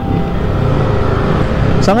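Yamaha scooter running while being ridden, a steady low rumble of engine and road noise with wind on the microphone. A man's voice starts near the end.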